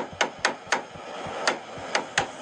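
A hammer striking repeatedly: about six sharp, uneven knocks over two seconds.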